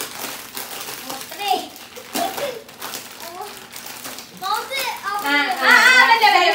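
Children's voices talking and laughing, with plastic snack packets crinkling as they are handled and opened; the voices get louder near the end.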